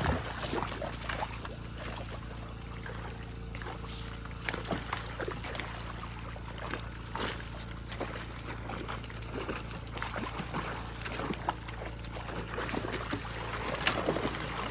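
Water splashing and sloshing during a milkfish harvest, as fish are scooped from the net into plastic crates, with many short, sharp splashes throughout. A steady low hum runs underneath.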